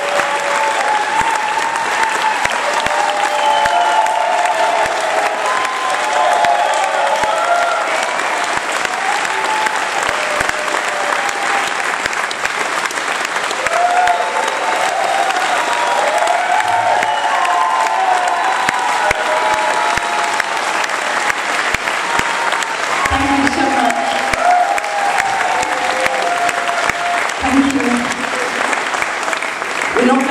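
A hall audience clapping steadily, with shouts and cheers rising through the applause and a few voices near the end.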